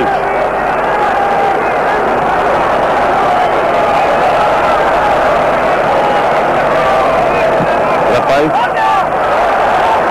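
Large football stadium crowd making a steady, loud din of many voices, with held notes of supporters' chanting running through it.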